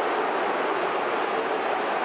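Large stadium crowd at a football match, a steady even din with no single cheer or impact standing out.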